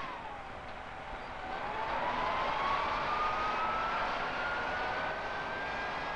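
Engine of a wheeled digging machine working under load, with a steady rumble and hiss. Its whine dips over the first second or so, then climbs slowly and steadily.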